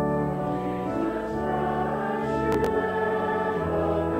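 Congregation singing a liturgical hymn with organ accompaniment, in sustained chords that change about every second.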